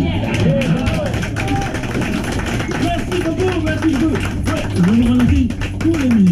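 A live jazz band playing, a man's wordless vocal gliding up and down over steady bass, with many sharp percussive taps running through it.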